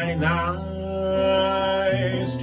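Solo singer performing a worship song with acoustic guitar accompaniment, holding one long note.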